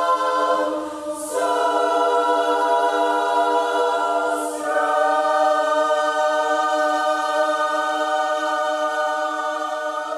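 A choir singing slow, sustained chords over a steady low held note, moving to a new chord twice.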